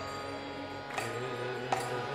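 Kirtan music: a steady held drone under a few sharp percussion strikes, with a wavering sung line coming in about a second in.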